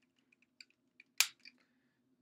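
Hard plastic toy parts clicking: a few faint ticks, then one sharp snap a little over a second in and a lighter click just after, as a part is clipped onto the red locomotive car of a DX ToQ-Oh toy.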